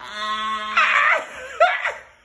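An elderly man laughing hard: a long, drawn-out laugh held on one pitch, turning rough and then breaking into short separate bursts near the end.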